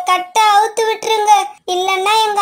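A high-pitched, childlike cartoon voice calling out in short pitched phrases, broken by two brief pauses.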